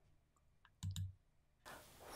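Near silence broken by two soft clicks close together, about a second in; a faint steady hiss comes in near the end.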